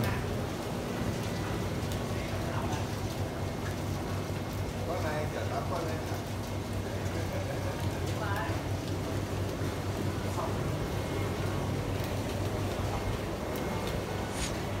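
A steady low hum runs throughout, with indistinct voices talking faintly in the background a few times.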